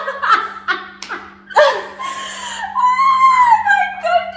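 Two women laughing loudly: a run of short laughing bursts, then one long, high, wavering laugh from about halfway.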